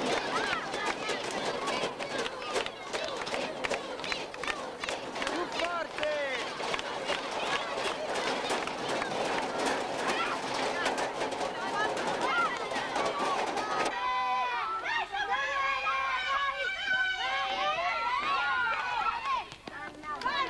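A group of children clapping rapidly and chanting together. About 14 seconds in the sound cuts abruptly to many children's high-pitched shouts and calls overlapping.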